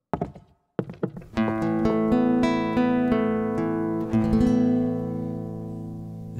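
A few footsteps on wooden floorboards, then about a second and a half in a nylon-string guitar, with electric bass beneath it, starts a slow country intro of held, ringing notes.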